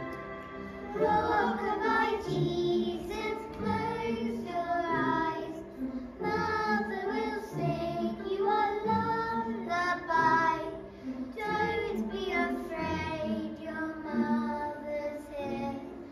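Young children singing a song to musical accompaniment.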